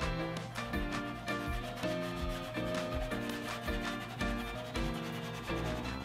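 Soft chalk pastel being rubbed back and forth on paper while coloring in a shape, with background music playing under it.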